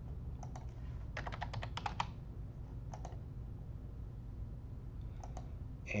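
Typing on a computer keyboard: a fast run of about eight keystrokes about a second in, with a few single clicks before and after, over a low steady hum.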